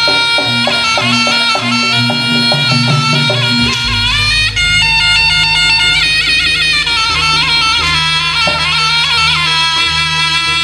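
Jaranan gamelan music played live: a shrill, nasal reed wind instrument carries an ornamented melody with trills over the ensemble. Struck percussion beats steadily under it for the first few seconds, and a deep low sound takes over after that.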